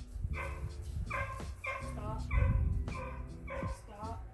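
Young border collie barking in a run of short, high barks, roughly two a second, with a low rumble about halfway through.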